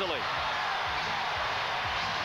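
Large indoor-arena crowd making a loud, steady noise of many voices together.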